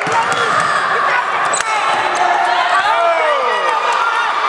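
Spectators shouting and calling out in an echoing gym during a basketball game, with a basketball bouncing on the hardwood court.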